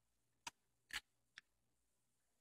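Three short sharp clicks from a Dual 1241 turntable's auto-return mechanism, about half a second apart, the middle one the loudest, as the stop cycle runs after the stop button.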